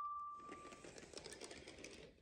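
The tail of a steam engine's whistle dies away within the first second, over a faint, rapid mechanical clatter that fades out near the end.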